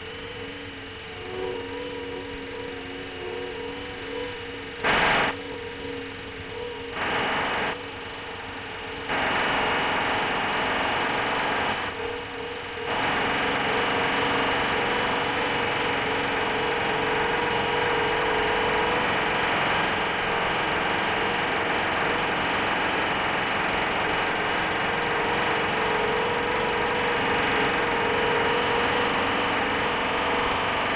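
Steady hiss and hum with no speech. It gets suddenly louder and hissier about nine seconds in, with brief louder patches before that.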